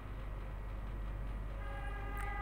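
A steady low hum, then about one and a half seconds in a sustained, level keyboard-like note with several overtones begins and holds: the start of an instrumental backing track.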